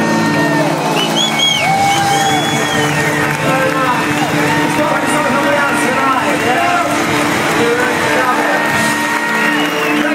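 Concert crowd cheering, whooping and whistling at the end of a song, with a few of the band's notes still held underneath.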